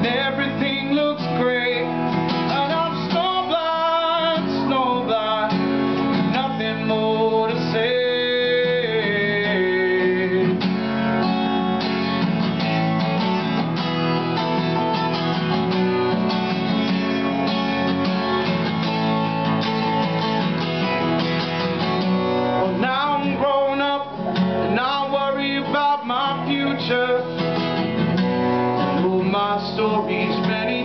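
Acoustic guitar strummed steadily through a song, with a man's sung vocal lines coming in over it during the first ten seconds and again after about twenty-three seconds.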